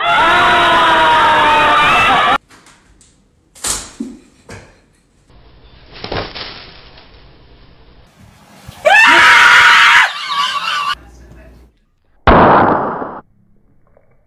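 People screaming and shrieking in separate short bursts: a loud one of about two seconds at the start, another of about a second midway, and a harsh noisy burst near the end, with quieter knocks and clicks between them.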